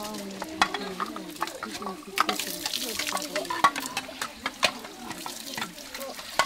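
Bowls clinking and knocking against one another and the stone basin as they are rinsed under a running tap, with water splashing and voices chattering in the background.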